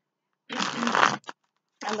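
Deck of tarot cards being shuffled by hand: one quick riffle about half a second in, lasting under a second. A woman's voice starts near the end.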